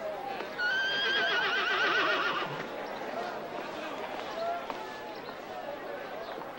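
A horse whinnying once, a loud quavering call of about two seconds starting just under a second in, over a background murmur of voices.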